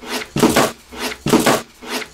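Two clipboards taped back to back being flipped over quickly, twice, about a second apart, each flip a short rush of paper-and-board noise.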